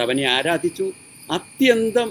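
A man reading aloud in Malayalam, in short phrases with a brief pause in the middle, over a steady high-pitched chirring of crickets.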